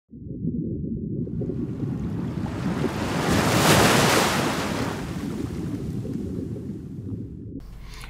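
Logo intro sound effect: a deep underwater-style rumble with a rushing swell that builds to a peak about halfway through, then fades, the whole effect cutting off suddenly just before the end.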